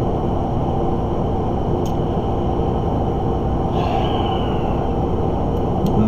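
Steady low background hum and noise in a room, with no speech, and one faint short sound about four seconds in.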